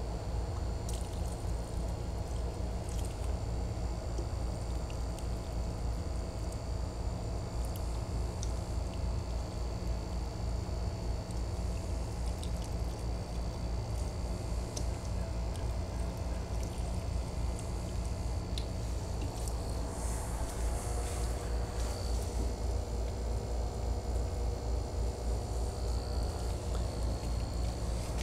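A steady low hum with a faint high whine runs throughout. Over it come faint trickles and small clicks of liquid being handled as a watering can is worked at a compost tea bucket.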